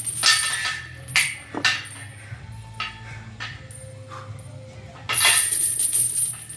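Steel lifting chains hanging from a loaded barbell clink and rattle against the floor as they pile up and lift during a heavy back squat, with a few sharp clinks in the first two seconds and fainter ones after.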